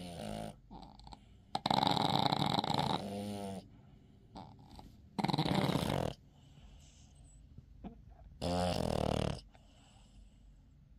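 A sleeping Boston terrier snoring, with a loud snore every two to three seconds and quiet pauses between breaths. Some snores carry a low buzzing tone.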